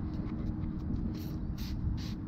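Trigger spray bottle of spray wax spritzed onto car paint: three quick hissing sprays in the second half, over a faint steady hum.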